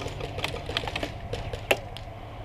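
Light, irregular clicks and snaps of airsoft fire across the field, with one sharper crack near the end.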